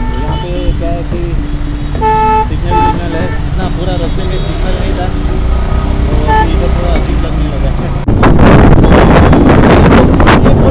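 Road traffic heard from a moving motorcycle: engine noise with several short vehicle horn toots, the loudest about two seconds in. About eight seconds in, loud wind buffeting on the microphone takes over.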